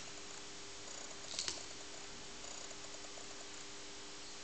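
Steady low hum with faint light ticks, and a brief cluster of small clicks about one and a half seconds in.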